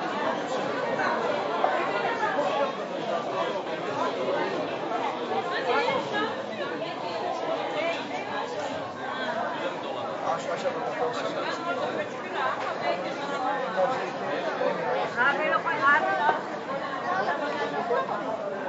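Crowd chatter of many shoppers and vendors talking at once in a busy market hall, with no single voice standing out.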